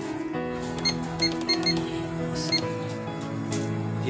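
Background music, with a quick run of short electronic beeps about a second in from a Sprint price-computing scale as it switches on and its display comes up at zero.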